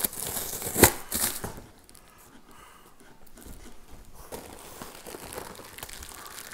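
Packing tape on a cardboard box being cut and torn open, with one sharp rip just under a second in. Then quieter rustling and crinkling of cardboard flaps and plastic bubble wrap.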